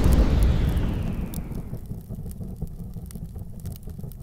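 Cinematic explosion sound effect of an animated logo intro: a loud boom at the start that dies away into a low rumble, its high end fading over the first two seconds, with scattered sharp crackles.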